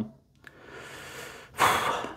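A man breathing through a pause in his speech: a faint breath, then a louder, quick intake of breath near the end.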